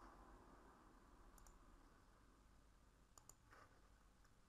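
Near silence: quiet room tone with a few faint clicks, two close together about three seconds in.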